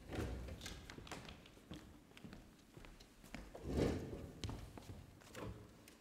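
Scattered footsteps, taps and thuds of musicians moving about a stage floor and settling into their chairs, with the loudest thud a little under four seconds in.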